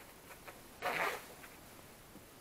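A single short rasping scrape about a second in, against a quiet background.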